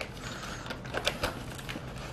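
A few light ticks and taps with a faint rustle: a cardboard trading-card booster box being handled on a table.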